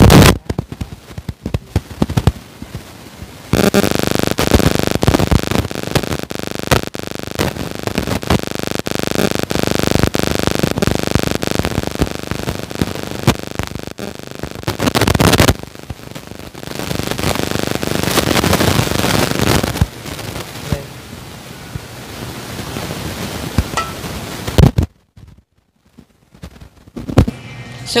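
A plastic rice paddle and hands scraping and scooping sticky cooked glutinous rice out of an aluminium rice-cooker pot: a long run of irregular scraping and clicking, loud in stretches, with a brief lull near the end.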